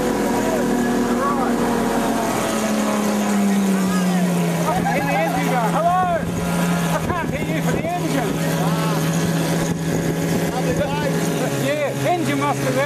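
Motorboat engine running steadily, its pitch dropping about three seconds in and again near the end as the throttle is eased back, over the rush of water and wind.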